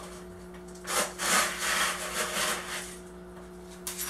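Gritty bonsai soil of pumice and lava rock scraping and rattling as it is scooped and shifted by hand in its container, a rasping scrape of about a second and a half that starts about a second in.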